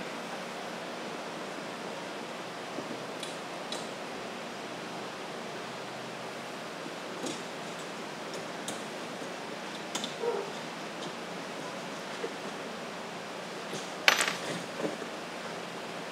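Steady background hiss with a few light metallic clicks and clinks, the loudest near the end, as a length of 2020 extruded aluminium and its small fittings are handled on a wooden workbench.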